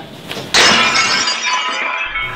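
Glass-shattering sound effect: a sudden crash about half a second in, followed by tinkling shards that fade away over about a second and a half.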